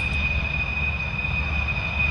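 Jet aircraft engines running steadily in flight: a constant high whine over a low rumble.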